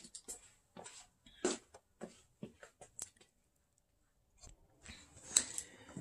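Faint, scattered light clicks and rustles of kitchen items being handled, with about a second of near silence in the middle.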